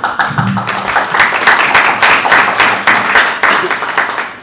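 Audience applauding: many hands clapping, starting suddenly and tailing off at the very end.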